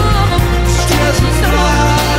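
A song with a sung vocal line over a steady bass and beat.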